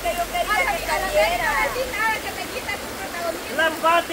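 Mostly speech: voices talking, with a faint steady rush of river water behind them.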